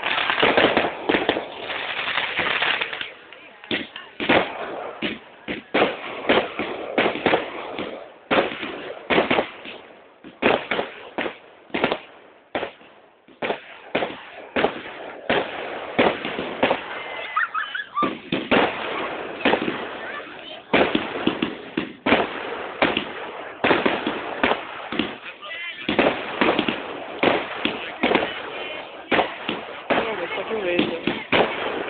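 Fireworks going off: a dense run of sharp bangs and crackles, several a second, thinning briefly about twelve seconds in.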